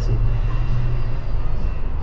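Steady low rumble of outdoor background noise in a pause between words.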